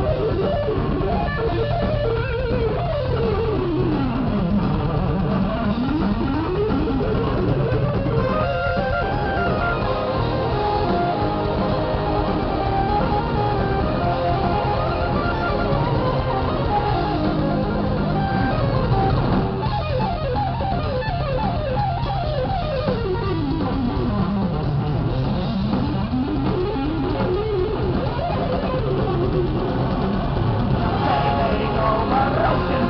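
Heavy metal band playing live without vocals: distorted electric guitar, bass guitar, drums and keytar. Fast melodic runs sweep down and back up twice.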